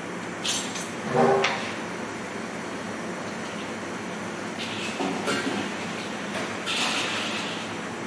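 A few short scrapes and knocks of a knife and a stainless steel bowl being handled, over a steady background hum.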